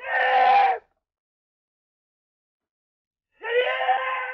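A person shouting twice: two loud, drawn-out cries, the first short and near the start, the second starting shortly before the end, with silence between.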